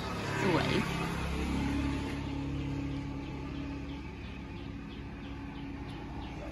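A steady, low engine hum, like a motor vehicle running in the background. It swells about a second in and fades slightly over the last few seconds.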